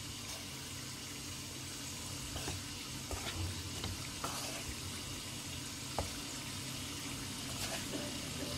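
A spatula stirring and tossing cooked basmati rice and vegetables in a non-stick pan, over a steady low sizzle, with a few light clicks of the spatula against the pan.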